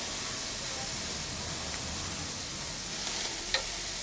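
Meat sizzling on a hot grill with flames flaring up, a steady hiss throughout. A single sharp click sounds about three and a half seconds in.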